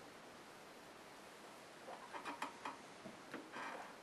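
Quiet room tone, then a few faint short clicks and soft mouth sounds over the second half, from a man swallowing and smacking his lips after a sip of beer and handling his glass.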